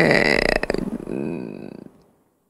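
A person's wordless drawn-out vocal sound, wavering in pitch and fading out just before the end.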